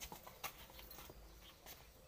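Faint, scattered knocks of a water buffalo's hooves as it steps, the clearest two about half a second apart near the start, over a faint low rumble.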